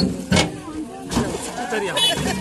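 Metal tailgate of a tractor trolley knocking and clanking as it is handled open, three sharp knocks over about a second, with voices around it.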